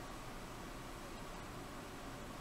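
Low, steady hiss of room tone, with no distinct sound.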